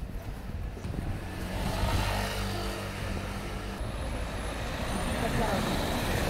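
Street sound with a motor vehicle's engine running as a steady low hum and traffic noise growing louder about a second and a half in, with passers-by talking.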